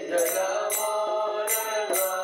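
A man chanting Vaishnava devotional prayers in a melodic, sustained singing voice, accompanied by regular strokes on a mridanga drum.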